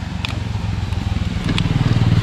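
Motorcycle engine running as it rides past on the road, growing louder toward the end.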